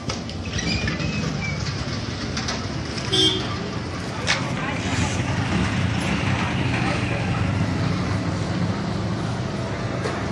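Street ambience: steady traffic and engine noise with background voices, and a brief higher-pitched sound about three seconds in.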